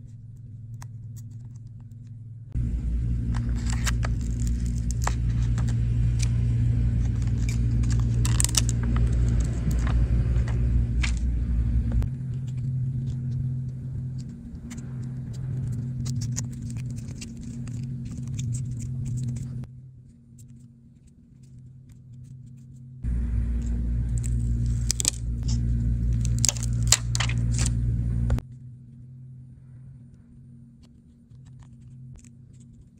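Small clicks and scrapes of iPhone internal parts and the battery being handled and pressed into a new phone housing, over a steady low hum that starts and cuts off abruptly twice.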